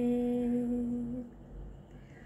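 A woman's unaccompanied singing voice holding one long, steady note at the end of a sung line, fading and stopping just over a second in; then only faint room tone.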